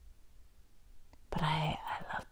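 Quiet pause, then a woman's short vocal sound about a second and a half in, lasting about half a second, with a few faint mouth clicks after it.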